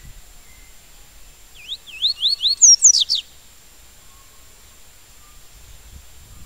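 Yellow-bellied seedeater (papa-capim) singing one short phrase of its 'tui-tui' song type, about a second and a half long: a run of quick rising whistled notes followed by a few fast falling sweeps.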